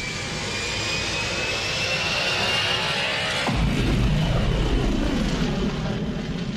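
Intro sound effect of a warp-speed jump: a rising whoosh with a climbing whistle swells in loudness, then a deep low rumble cuts in about three and a half seconds in.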